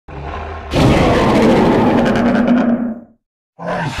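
Dinosaur roar sound effect for a Baryonyx: a low rumbling growl that swells about three-quarters of a second in into a loud, long roar, then fades out at around three seconds. A second, shorter sound begins just before the end.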